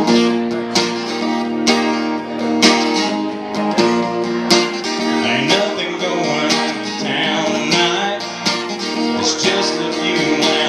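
Acoustic guitar strummed live, chords ringing with a firm stroke about once a second.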